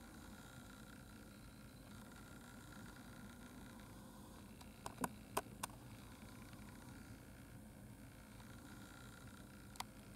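Faint steady background noise, with three short sharp clicks close together about five seconds in and one more click near the end.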